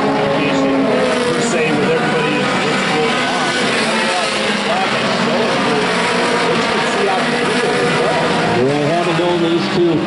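Several oval-track race cars running at speed, their engine notes overlapping in a steady, loud drone. Near the end the engine pitch rises as cars accelerate past.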